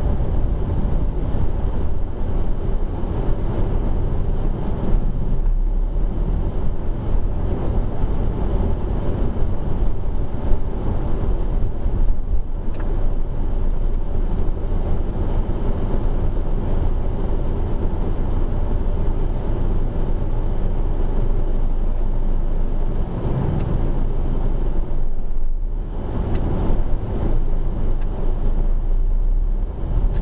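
Steady road noise of a moving car: engine and tyre hum on a wet, slushy road, with a brief lull about 25 seconds in.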